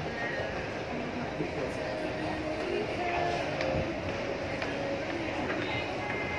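Shopping-mall crowd ambience: indistinct chatter of passers-by over a steady background din, with a few light clicks.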